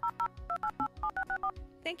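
Touch-tone telephone keypad dialing a 1-800 number: a quick run of about ten short two-tone beeps, several a second.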